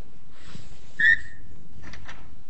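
A single short, high squeak about a second in, over the quiet noise of a large room, with a small knock near the end.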